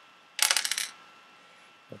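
Small pebble counters clicking and rattling against each other in one quick clatter of about half a second, starting about half a second in.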